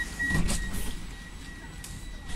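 Interior noise of a city public-transport vehicle: a steady low rumble with a thin steady high tone, and a brief louder bump about half a second in.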